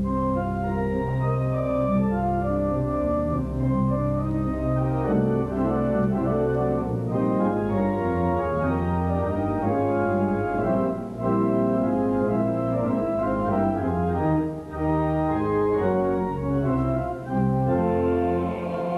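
Moog modular synthesizer playing slow, sustained chords with an organ-like tone, changing chord every second or so: the instrumental opening of the piece.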